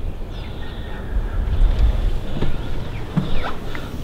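Wind buffeting the camera microphone: a low, pitchless rumble that swells about a second in, with a couple of faint knocks near the end.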